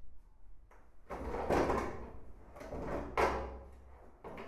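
Two scraping, sliding sounds, a longer one about a second in and a shorter, sharper one about two seconds later.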